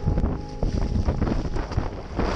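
Wind buffeting the microphone aboard a sailing trimaran: an uneven, gusty rumble, heaviest in the low range.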